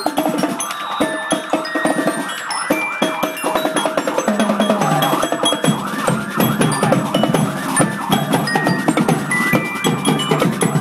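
Marching drumline playing a fast, steady street beat on snare and tenor drums, with a marching glockenspiel (bell kit) struck with mallets ringing short bright notes over the drums.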